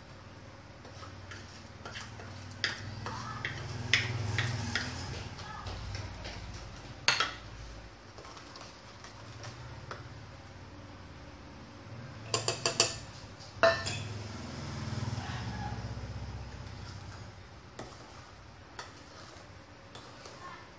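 Wooden spoon stirring thick brownie batter in a stainless steel bowl, scraping around the metal, with sharp clinks and knocks against the bowl, including a quick run of them about two-thirds of the way through.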